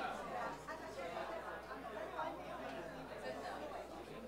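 Indistinct chatter of many people talking at once, overlapping voices with no single speaker standing out.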